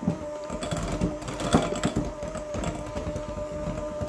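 KitchenAid electric hand mixer running at a steady speed with a constant motor whine, its beaters working a thick cream cheese and sugar mixture in a glass bowl. Scattered knocks come from the beaters against the glass.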